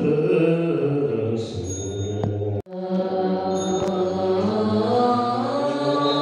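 A congregation chanting a Buddhist mantra together in a sustained, melodic unison. The sound drops out for a split second about two and a half seconds in, then the chanting carries on.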